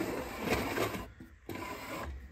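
Handling noise from the opened plastic electronic memory game: a rasping, scraping rub for about a second, then fainter rubbing near the end.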